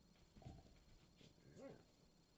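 A dog whimpering faintly, with a short whine that rises and falls about a second and a half in.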